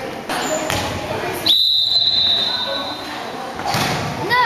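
A referee's whistle blown once in a gymnasium: one shrill, steady blast that starts sharply about a second and a half in and lasts about a second and a half.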